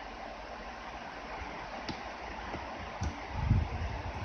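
Steady background hiss of room noise, with a couple of faint clicks and a low bump or two near the end.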